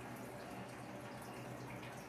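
Faint crackle of a hot pyrography pen tip burning into a wooden board, over a steady low hum.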